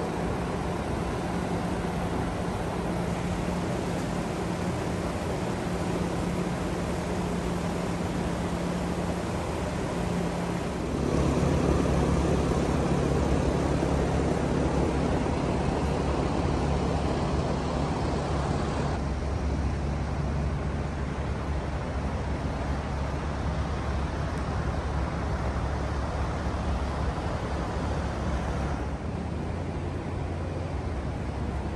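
A steady low mechanical hum with a few held tones, growing louder and deeper about a third of the way in, with extra hiss for several seconds after that.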